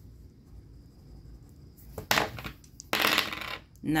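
Two dice rolled onto a hard tabletop, clattering in two bursts about two and three seconds in, the second longer.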